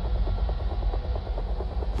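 A steady low rumble with a fast, even chopping pulse of about ten beats a second running over it.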